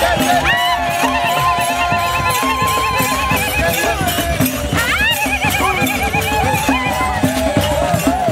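Traditional drum beaten in a steady rhythm while a crowd sings, with long, high, warbling ululation calls rising over it about half a second in and again about five seconds in.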